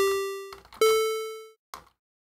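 Sytrus synth square-wave tone shaped by a decay-only volume envelope (attack, sustain and release at zero), played as two plucky notes: one at the start and a higher one about 0.8 s in, each dying away in under a second.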